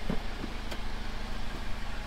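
A vehicle engine idling steadily, a low even hum, with a couple of faint clicks in the first second.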